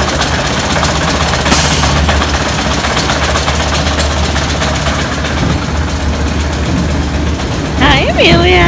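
Small children's roller coaster train rolling past on its track: a loud continuous rattling clatter over a low rumble, stopping shortly before the end.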